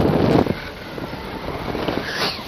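Wind rushing over a selfie-stick camera's microphone during a paraglider flight. It is loud for about the first half second, then drops off and slowly builds again.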